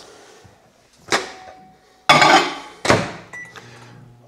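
Microwave oven being loaded and started: the door clicks open, a glass measuring cup goes in with a short clatter, and the door thunks shut. A few short keypad beeps follow, then the oven starts with a low steady hum.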